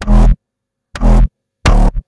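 A distorted, really wide synth bass layer from a bass house track, played back solo in three short stabs about two-thirds of a second apart. The stabs carry a heavy sub-bass and a gritty upper edge, and each cuts off abruptly.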